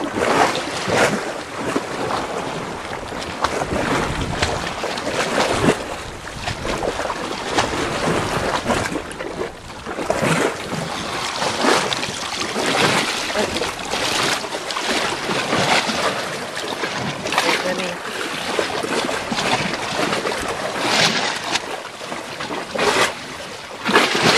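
Shallow seawater splashing and sloshing around someone wading close to the camera, with wind buffeting the microphone. It comes in uneven swells and splashes rather than a steady rush.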